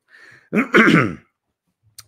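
A man clears his throat: a short breath, then about half a second in, a brief loud voiced throat-clear.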